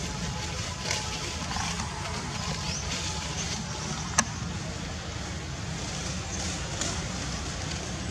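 Outdoor ambience with a steady low rumble and a few faint high chirps, broken by a single sharp click about four seconds in.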